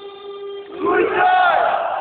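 Football crowd in a stadium shouting and chanting, with a held note in the first half and a loud yell close to the phone from about a second in.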